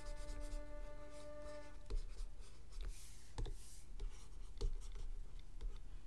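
Stylus pen tapping and stroking on a drawing tablet: scattered light taps and a short scratchy stroke about three seconds in.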